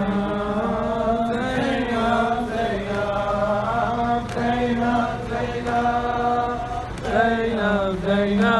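A noha, the Muharram lament, chanted by men's voices in long drawn-out notes that bend up and down.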